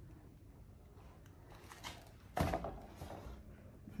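Quiet room tone broken by one short, sharp thump a little past halfway, which fades quickly.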